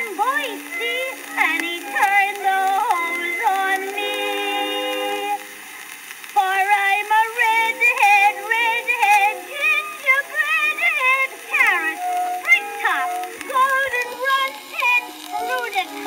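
Music from an early acoustic phonograph recording of a comic song: a lively passage of melody over band accompaniment, thin-sounding with no bass and little treble, and a faint surface hiss. There is a brief lull about six seconds in.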